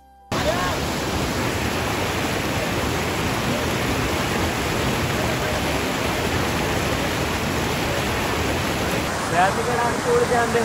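Water rushing over a small waterfall and down a rocky stream, a steady loud rush that cuts in suddenly just after the start. Voices come in over it near the end.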